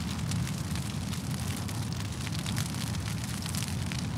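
Steady rumbling noise with fine crackling all through, a sound-effect bed with no music or speech.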